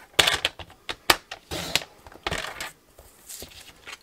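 Sliding-blade paper trimmer cutting strips of patterned paper: a few short scraping strokes of the blade carriage with sharp clicks in the first two and a half seconds, then quieter paper handling.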